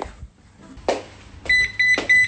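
Robot vacuum cleaner sounding a run of short, high electronic alert beeps, roughly four a second, starting about one and a half seconds in. It is the alert of a robot hoover that has stopped, which the owner takes to mean it has died.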